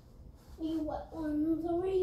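A young girl singing a short phrase of held, slightly wavering notes in two stretches, starting about half a second in.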